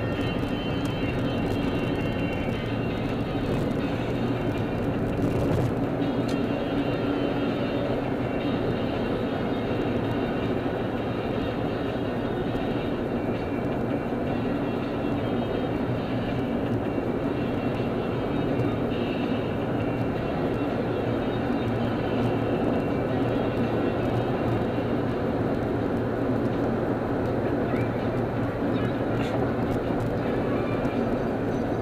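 Steady road and engine noise of a car driving at freeway speed, with faint music underneath.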